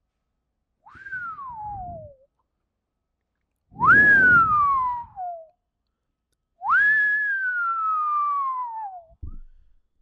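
A person whistling three falling whistles of amazement. Each whistle is a quick rise and then a long downward glide in pitch, and each lasts longer than the one before.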